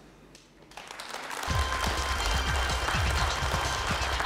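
Studio audience applauding, building up about a second in, while entrance music with a low pulsing bass beat comes in underneath.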